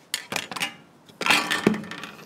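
Metal wire cooling rack clinking and rattling against a metal baking tray as it is set down on it: a few light clinks, then a louder cluster of clatter with brief ringing about a second in.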